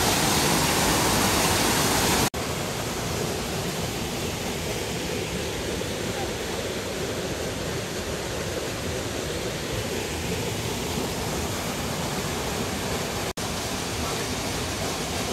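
Steady rush of whitewater cascading down a rocky gorge. About two seconds in it drops abruptly to a softer, even rush of the stream. Near the end there is a momentary gap.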